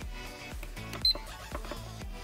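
A single short, high electronic beep from a recumbent exercise bike's console as its arrow button is pressed, about a second in, over background music.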